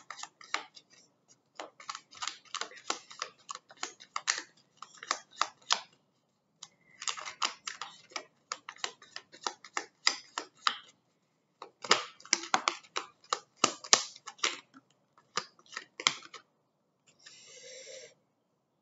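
A deck of oracle cards shuffled by hand: rapid runs of crisp card clicks in bursts of a few seconds with short pauses between them, and a brief rustle of cards near the end.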